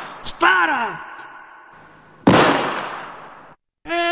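A gunshot sound effect goes off just over two seconds in, its echo dying away over about a second. Before it, about half a second in, comes a short cry that falls steeply in pitch.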